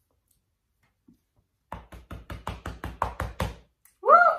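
A hand patting rapidly on a chest: a quick run of about a dozen dull knocks, roughly six a second, starting about halfway in and lasting about two seconds.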